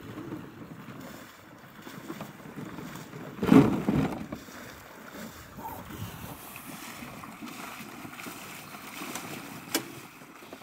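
Duck decoys being handled and loaded into a boat, with water sloshing around a hunter's waders. A loud thump comes about three and a half seconds in and a sharp click near the end.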